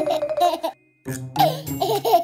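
Cartoon baby giggling and laughing over children's background music, with a brief break in the sound just before halfway.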